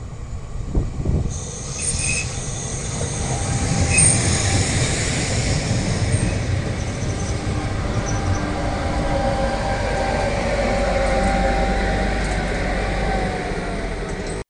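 Regional passenger train running past along the platform: steady low rumble of wheels on rail building up about a second in. High-pitched wheel squeals come in the first few seconds, and a faint hum runs over the rumble.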